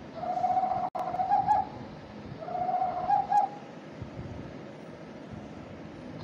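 An owl hooting: two long, steady hoots, each a little over a second, less than a second apart.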